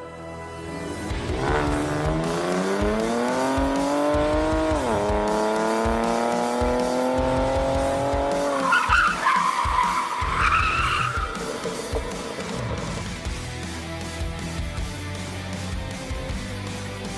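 A car engine revving hard as it accelerates, its pitch climbing, dropping at a gear change about five seconds in, then climbing again. It is followed by about three seconds of tires squealing.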